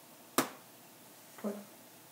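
A single sharp knock, as if something small dropped, then about a second later a fainter, lower short sound.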